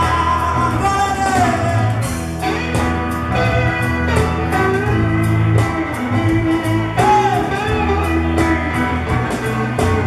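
Live band playing a bluesy rock song: two amplified acoustic guitars over bass and drums, with a lead melody of gliding, bending notes on top.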